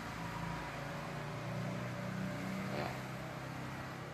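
Steady low background hum with a faint hiss.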